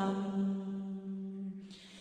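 A single voice chanting a Vietnamese scripture in a slow sung recitation, holding one long low note that fades away near the end at the close of a phrase.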